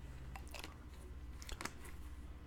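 Faint mouth sounds of someone tasting a mouthful of milk: a few soft lip smacks and tongue clicks, over a low steady hum.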